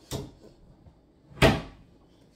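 A box lid being handled and opened: two short clacks, a light one right at the start and a louder one about a second and a half in.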